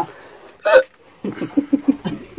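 A person's voice making short non-word sounds: one sharp cry that bends upward in pitch a little under a second in, then a quick run of about six short syllables in the second half.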